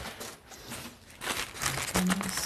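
Plastic bag crinkling and rustling as it is handled, faint at first and louder in the second half.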